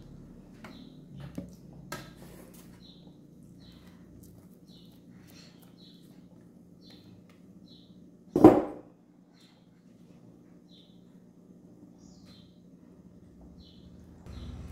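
A spatula scraping chocolate cake batter out of a glass bowl into a metal baking pan: soft wet scrapes and light clicks of spatula and bowl, with one louder knock about eight seconds in.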